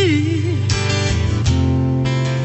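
Acoustic guitar strummed in a slow song, played live, with a woman's voice holding a wavering sung note over it for the first half second.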